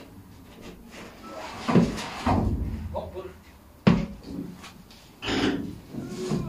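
Bare steel car body shell being tipped onto its side, knocking and thudding against the tyres it rests on, with sharp knocks about two seconds in and again near four seconds, mixed with men's grunts of effort.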